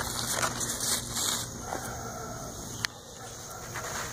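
Large pumpkin leaves rustling and brushing as they are handled close to the microphone, with one sharp click about three seconds in.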